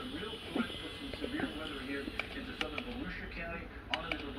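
Speech: a voice talking, with a few sharp clicks around the middle and near the end.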